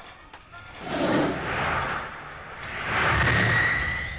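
Two whooshing swells, the first about a second in with a falling high whistle, the second near the end running into a steady ringing tone: the swoosh effect of a title-card transition.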